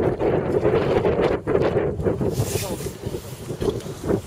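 Wind buffeting the camera microphone: a rumbling noise that rises and falls unsteadily, with faint voices in the background.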